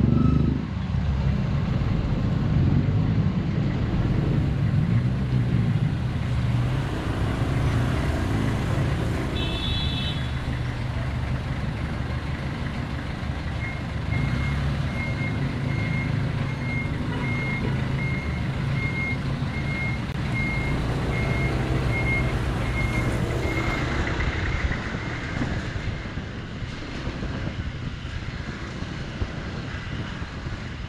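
Honda ADV 150 scooter's single-cylinder engine running at low speed in street traffic. In the middle, a high electronic beep repeats about twice a second for roughly ten seconds, and a short high tone sounds briefly about ten seconds in.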